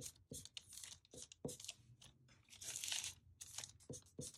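A permanent marker drawing on crumpled brown paper-bag paper: a run of short, scratchy pen strokes, with a louder, longer rustle of the paper as it is shifted about three seconds in.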